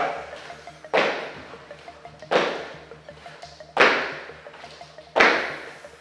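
Feet landing on a wooden floor during repeated jump squats: four sudden thuds about a second and a half apart, each trailing off in the hall's echo. Faint background music runs underneath.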